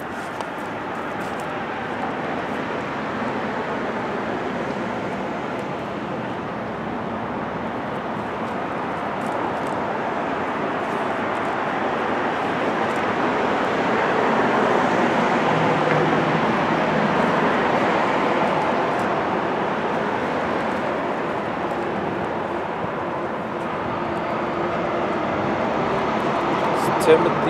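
Steady street traffic noise, a wash of passing vehicles that slowly swells to its loudest about halfway through and eases off again, with a low engine hum showing through in the second half.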